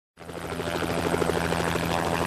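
A steady mechanical drone, a low hum with a fast, even pulse, like an aircraft or helicopter engine.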